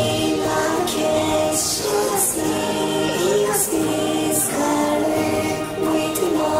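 Choral music: voices singing long held notes that glide from one pitch to the next about once a second.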